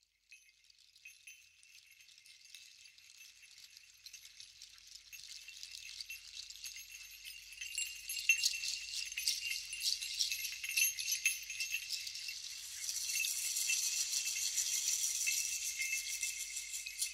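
Jingling, rattling percussion, made of many small metallic clicks with a light ringing, fades in from silence and grows steadily louder as the opening of the song.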